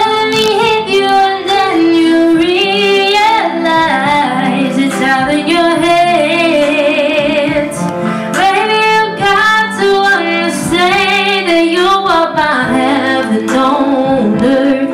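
A young woman singing a slow song into a handheld microphone, over instrumental accompaniment. About six seconds in she holds a long note with vibrato.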